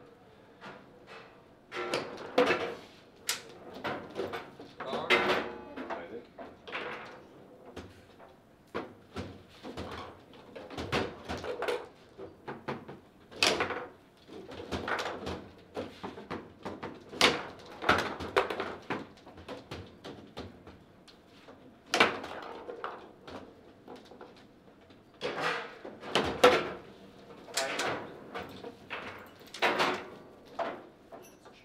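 Table football in play: sharp knocks and clacks of the ball and rods against the plastic figures and the table, coming in irregular bursts.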